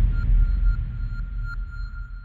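Tail of an electronic logo-intro sound effect: a deep rumble fading away under a steady high, sonar-like tone with a few faint pings.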